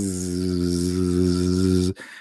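A man's voice imitating a bee: one long, steady buzzing 'bzzz' held on a single pitch, cutting off just before the end.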